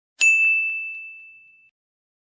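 A single bright, bell-like ding, struck once and fading away over about a second and a half.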